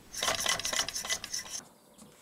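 A small home-built Stirling engine's four-bar linkage drive running, its metal mechanism making a fast, rasping clatter that stops about one and a half seconds in.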